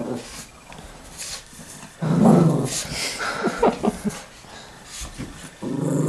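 Shih Tzu puppy growling and scuffling as it wrestles a stuffed toy, loudest in a rough stretch from about two seconds in to about four seconds.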